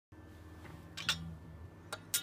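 Faint low notes from a Status electric bass with a graphite neck, ringing and fading out, with a sharp click about a second in and another near the end.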